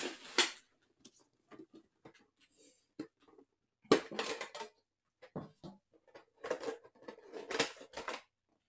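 A metal collector's tin and its plastic packaging being handled: scattered clinks, scrapes and crinkles with short quiet gaps, loudest about four seconds in and again near the end.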